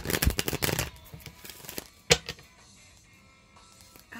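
A deck of tarot cards being shuffled by hand: a quick run of card clicks in the first second, then a single sharp snap of the cards about two seconds in.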